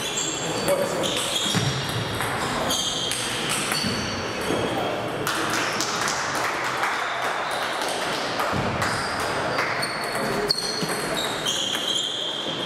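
Table tennis balls clicking off bats and tables in quick, irregular succession, from this rally and the other tables in play, over a steady murmur of voices in a large sports hall.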